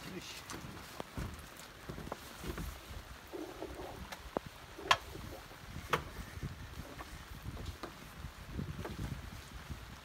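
Wind noise on the microphone while an anchor rope is hauled taut by hand on a catamaran deck, with scattered knocks and two sharp clicks about five and six seconds in.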